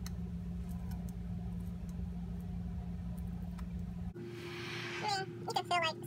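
A steady low hum of room background noise for about four seconds. Then the sound cuts abruptly to sped-up audio: a brief hiss, then fast, high-pitched chattering speech.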